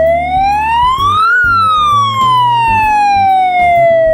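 An AmpliVox Safety Strobe megaphone's built-in electronic siren sounding loudly. It is a single wailing tone that sweeps up in pitch for about a second and a half, then falls slowly for the rest.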